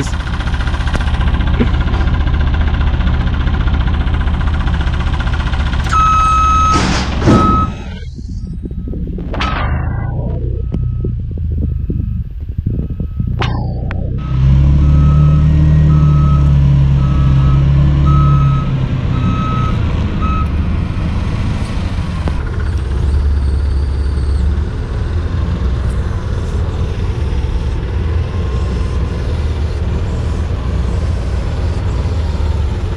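Clark forklift's engine running under load, its warning beeper giving a steady run of short, evenly spaced beeps on one pitch for about fifteen seconds as it moves the milling machine. Partway through the beeping the engine runs louder for about five seconds.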